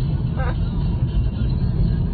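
Steady low road and engine rumble inside a moving car's cabin at highway speed.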